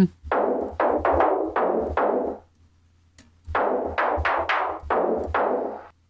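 Sampled snare drum (a Black Beauty snare in a large room) played as notes through Ableton Live's Sampler and its low-pass filter, in two runs of five or six hits. The filter's key tracking is off, so its cutoff stays fixed while the note pitch changes, giving a less natural sound.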